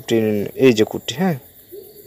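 A man's voice: a long, drawn-out hesitation sound held on one pitch, then a couple of short syllables, breaking off about two-thirds of the way through, leaving faint background hiss.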